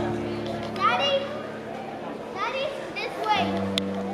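Music with long held chords that change once near the end, with children's high voices calling out over it.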